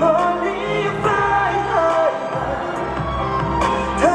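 A Korean pop song performed live and played over a stadium sound system: a sung melody carried over steady accompaniment.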